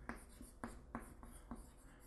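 Chalk writing on a chalkboard: a faint run of short taps and scrapes, about eight strokes, as letters are written.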